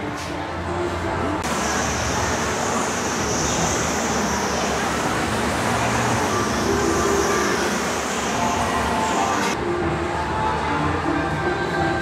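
Amusement ride machinery running in a large indoor hall, heard as a steady mechanical rumble. A louder hiss sets in about a second and a half in and cuts off near ten seconds.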